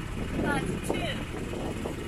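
Sailboat's motor running steadily under way, a low rumble, with a brief faint voice about half a second in.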